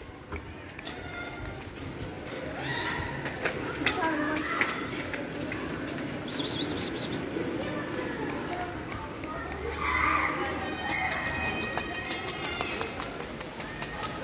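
Indistinct children's voices talking and calling, with scattered clicks and a short hiss about six and a half seconds in.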